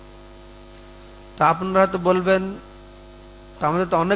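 Steady electrical mains hum in the microphone's sound system, with a man's voice speaking briefly in the middle and starting again near the end.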